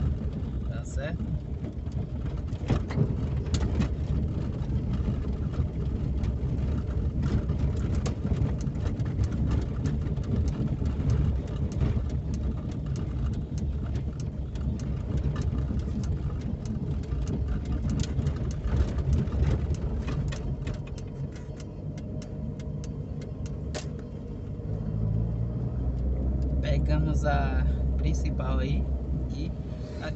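A car driving slowly, heard from inside the cabin: a steady low engine-and-road rumble with frequent rattles and clicks as the tyres run over cobblestones. The rattling thins out about two-thirds of the way in on a smoother road.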